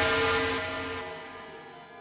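Hydronexius 2 rompler playing its "Unsolved Bells" patch, a bell-like synth chord of several tones with a noisy shimmer, fading steadily.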